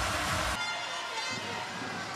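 Arena crowd noise from a large handball crowd, a steady din. Its low rumble drops away and the sound thins about half a second in, at a cut in the edit.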